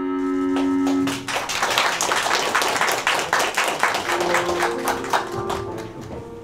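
The song's last sustained chord stops about a second in, followed by a small crowd clapping for about four seconds, dying down near the end as faint background music plays.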